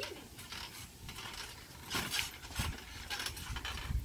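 Trampoline springs and mat creaking and clicking under light bouncing and steps. There are several irregular clicks, with soft low thumps in the second half.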